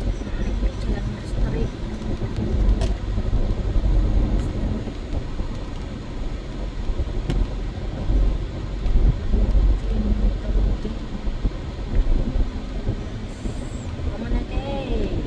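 Car driving on wet roads heard from inside the cabin: a steady low rumble of engine and tyres on the road surface.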